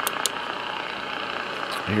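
Steady static hiss from a Lescom LC995 V2 CB radio's receiver tuned to channel 38 lower sideband on an outside antenna: a dead band with only something faint way off in the background. Two short clicks come just after the start.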